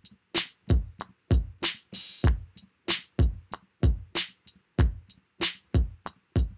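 Electronic drum beat on GarageBand's Trap Door software drum kit, played live from a laptop keyboard at 95 beats per minute: deep kick hits mixed with short hi-hat and snare ticks, and a longer hissing hit about two seconds in. The take is played by hand and not yet quantized, so it has some timing mistakes.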